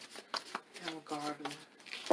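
An oracle card deck being shuffled by hand, a few short card clicks, with a woman's voice speaking softly over it in the middle.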